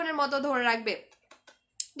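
A woman speaking for about a second, then a short pause with a few faint clicks and a sharp click near the end.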